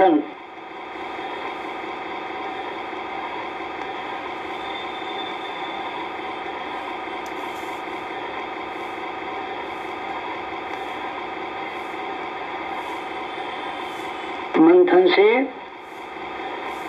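A steady drone of many held tones, unchanging in pitch and level, with a short spoken phrase near the end.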